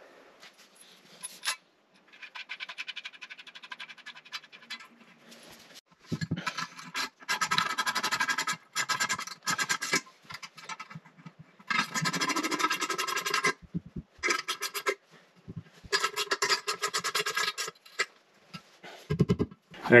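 Ratchet wrench clicking rapidly in several spells as it tightens the nuts on the toilet's closet bolts, drawing the bowl down onto its flange seal ring.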